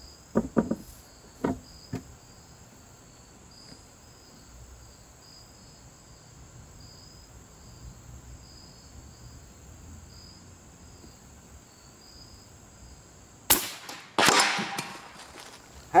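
One shot from a suppressed .357 big-bore PCP air rifle near the end: a sharp crack, followed at once by a longer rushing noise lasting under a second. Before it, a few light clicks of handling and steady crickets chirping.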